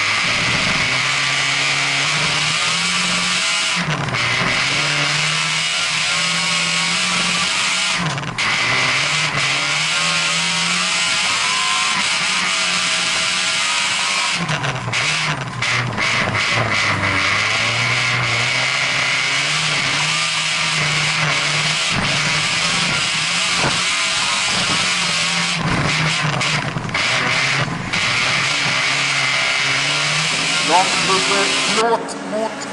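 Folkrace car's engine heard from inside the cabin during a race heat, its pitch repeatedly rising and falling as the driver accelerates, lifts off and changes gear, over a steady hiss.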